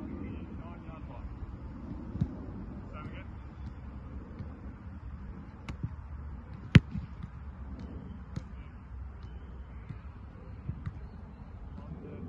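Two hard thuds of a football, a softer one about two seconds in and a much louder, sharper one about seven seconds in, over steady outdoor field ambience with faint distant voices.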